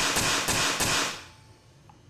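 High-pressure pneumatic pinner firing pins through a metal plate into a hard wall: a quick run of sharp shots about a third of a second apart, their ringing dying away within about a second.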